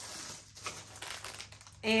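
Clear plastic packaging crinkling and rustling as it is handled, in irregular soft bursts.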